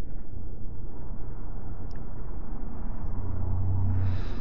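Steady low background rumble with no clear pitch, getting a little heavier in the bass near the end, with a faint click about two seconds in.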